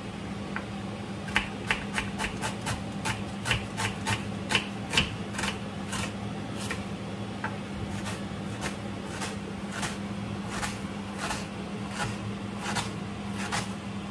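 Kitchen knife slicing a red onion on a wooden cutting board, in a steady run of sharp taps at about two to three cuts a second, over a low steady hum.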